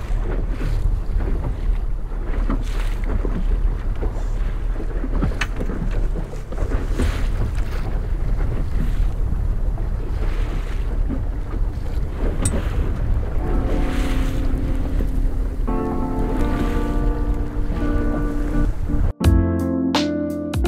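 Small fishing boat's outboard motor running steadily at trolling speed, with wind buffeting the microphone and water rushing past the hull. Background music fades in over the last few seconds, with a sudden brief dropout just before the end.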